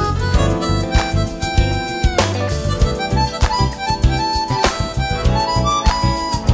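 Live smooth-jazz band playing a groove: electric bass and drums under a lead melody line.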